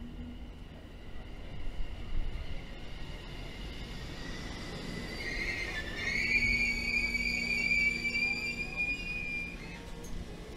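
London Overground Class 710 electric train braking into the platform with a high, steady brake squeal. The squeal swells in about halfway through and cuts off suddenly near the end as the train stops, over a low running rumble.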